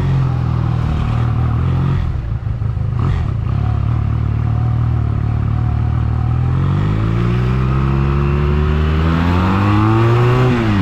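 Honda Rebel 250's small parallel-twin engine under way on a ride, running at low revs at first, then rising steadily in pitch as it accelerates over the last few seconds, with wind noise over the microphone.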